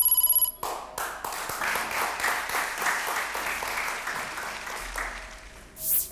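A fast-pulsing electronic game-show ringing tone ends about half a second in, marking the correct answer. Studio audience applause follows and fades out near the end.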